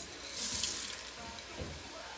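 Black beans poured from a bowl into an Instant Pot's steel inner pot onto sautéed sofrito, a short hissing rush of beans strongest about half a second in, then trailing off.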